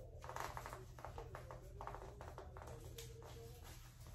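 Faint, scattered rustling and soft taps of a fabric wig band and hair being handled as the band is tied around the head, over a low steady hum.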